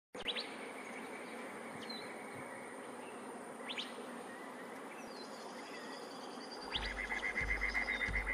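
Outdoor nature ambience: a steady insect drone with a few short, rising bird chirps spaced a second or two apart. Music with a low pulsing beat comes in near the end.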